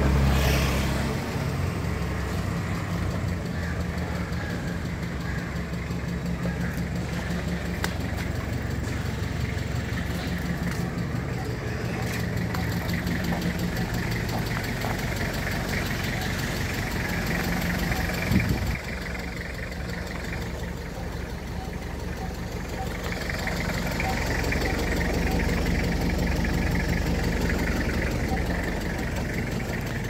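Toyota Qualis engine running steadily at low speed as the vehicle creeps along, a low even hum. A brief knock comes about 18 seconds in, and the sound is a little quieter after it.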